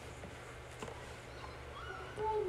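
Quiet room tone with a steady low hum, a faint click about a second in, and a faint short rising tone near the end.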